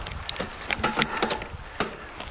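Mountain bike rolling over a dirt trail covered in dry leaves and twigs: a steady rush of tyre noise with scattered clicks and knocks from the bike and the ground.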